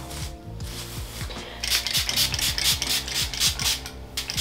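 Pump spray bottle of Color Wow Dream Coat being squeezed rapidly, giving a quick run of short hisses, several a second, beginning about a second and a half in.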